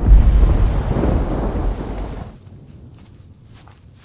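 Rolling thunder sound effect: a deep rumble that hits at once, then fades away over about two seconds, leaving a quiet bed with a few faint ticks.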